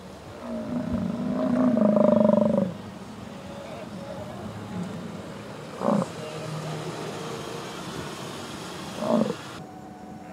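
American bison bull bellowing: one long, deep call about half a second in that grows louder for about two seconds, then two short calls near six and nine seconds in. Such bellows are the bull's rutting call in late summer.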